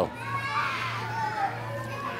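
Many young children's voices at once in a large room, a quiet jumble of chatter as they scratch their own palms on cue, with a steady low hum underneath.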